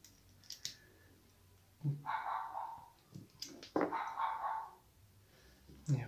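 A dog barking off-camera: two barks about two seconds apart. Between them come a few light clicks from small reel parts being handled.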